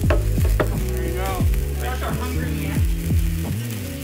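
Crackling fizz of a lit sparkler, over background music with deep sustained bass notes and a regular beat.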